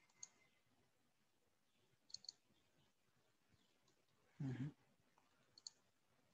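Faint computer mouse clicks: a single click just after the start, then quick double clicks about two seconds in and near the end. A short, louder low thump comes a little after four seconds in.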